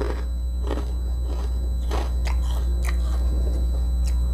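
Close-up chewing of a mouthful of crunchy assorted peanuts: about half a dozen sharp, irregular crunches. A steady low electrical hum runs underneath.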